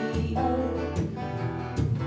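Acoustic guitar strummed in a live performance, chords ringing on between strokes in a gap between sung lines.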